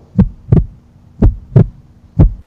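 Heartbeat sound effect: low double thumps (lub-dub), about one beat a second, over a faint steady hum.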